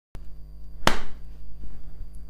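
Frozen slush ice knocking sharply once against a plastic tub about a second in, amid quieter handling noise over a low steady hum.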